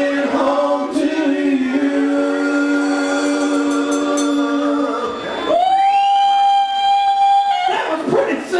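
Live rock singing through a PA, the voice holding long sustained notes, followed by a steady high held tone for about two seconds near the end.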